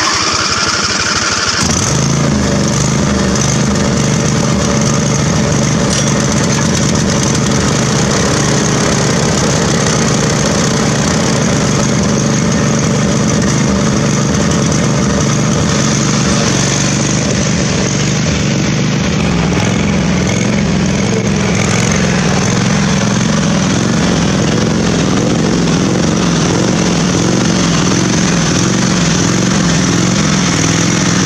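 Husqvarna riding lawn tractor's 24 hp Briggs & Stratton V-twin starting and then running steadily, the low engine note settling about two seconds in.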